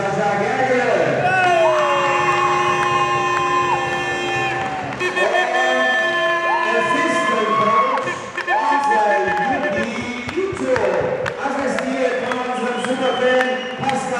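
Singing with music, long held notes sliding from one pitch to the next, over crowd cheering.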